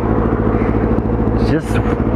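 Motorcycle engine idling steadily while the bike stands still.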